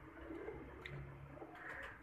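A domestic Teddy pigeon, held in the hand, cooing faintly and low.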